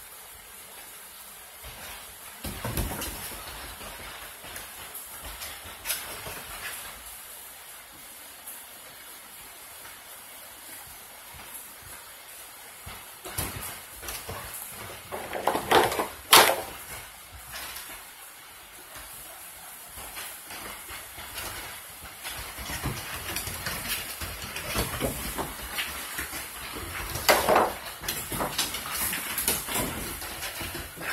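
Steady rain hiss, with irregular bursts of scuffling and noise from two young dogs wrestling on a wooden deck, loudest about halfway through.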